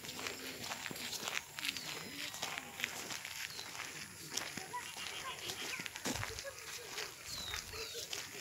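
Footsteps on a dirt path, with people's voices faint in the background and short high chirps now and then.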